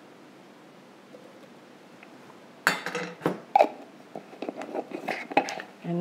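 Quiet for the first couple of seconds, then from about two and a half seconds in a run of clinks, knocks and light clatter: a metal teaspoon and a glass jar handled against a stainless steel mixing bowl.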